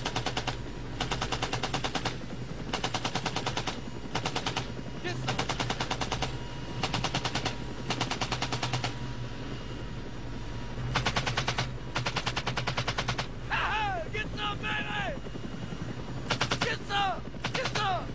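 M60 machine gun fired from a helicopter's open door in about eight rapid bursts of roughly a second each, over the steady drone of the helicopter. Between the later bursts a man's voice shouts and laughs.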